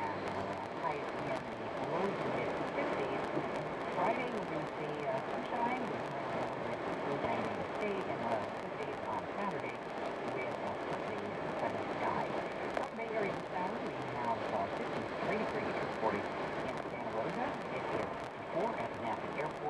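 AM news radio broadcast playing in a car: a voice over steady road noise.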